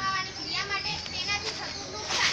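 Speech only: a schoolgirl talking, with other children's voices in the background.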